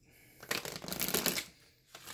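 A deck of tarot cards being shuffled by hand: a quick run of card flicks starts about half a second in and lasts about a second.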